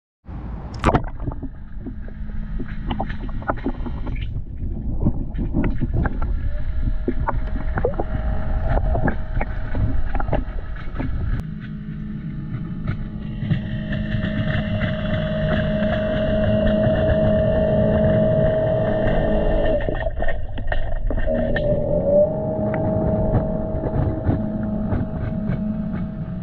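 Cordless robotic pool cleaner running on the pool floor, with a low rumble of water and scattered clicks. From about six seconds in, a steady motor whine sets in and is strongest in the middle.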